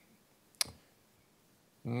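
A single sharp click about half a second in, against near silence, followed near the end by the start of speech.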